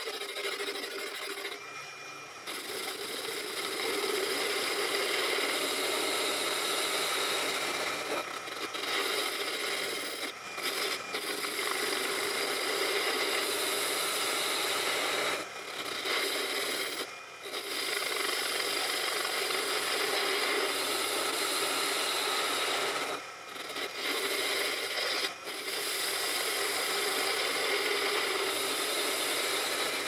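Proxxon PD 250/e mini lathe running while its tool takes light facing cuts across a steel disc: a steady mechanical whir with cutting scrape that dips briefly several times.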